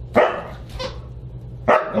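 Siberian husky barking: two loud short barks about a second and a half apart, with a quieter one between.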